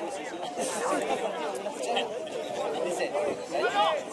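Several people talking at once, an overlapping chatter of voices with no single clear speaker.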